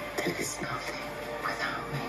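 Film trailer soundtrack: a line of dialogue spoken over background music.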